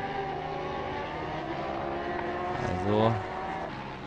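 Superbike racing motorcycle engines held at high revs, a steady blend of several engine notes. A brief voice sound about three seconds in is the loudest moment.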